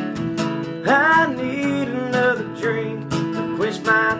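Acoustic guitar with a capo, strummed in a steady rhythm as a country song accompaniment.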